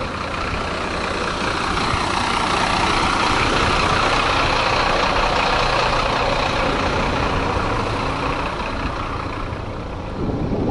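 Road traffic with a heavy vehicle's engine, such as a coach or truck, growing louder to a peak midway and fading towards the end.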